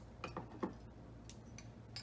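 Bottle opener and metal crown cap on a glass soda bottle: a few faint metallic clicks and taps as the cap is pried off and handled.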